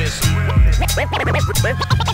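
Hip-hop beat with turntable scratching: quick back-and-forth pitch sweeps cut over a steady, bass-heavy drum loop.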